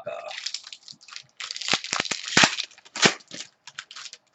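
A foil trading-card pack wrapper being torn open and crinkled, as a quick run of sharp crackles and rips with the loudest tears about two and three seconds in.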